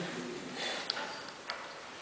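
A pause in a man's speech: low room noise with a few small, sharp ticks, one just under a second in and another about half a second later.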